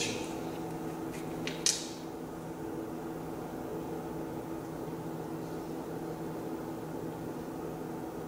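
A short chalk tap on a blackboard as a note is drawn, then a steady low background hum of the room.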